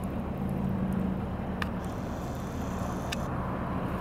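Car engine idling steadily, a low hum, with two faint clicks.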